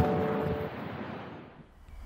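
Background music ending: a last hit, then held notes that stop and a wash that fades away over about a second and a half.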